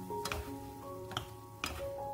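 Background music of held notes, over which a wooden spatula knocks against the frying pan three times while stir-frying bracken fern stems.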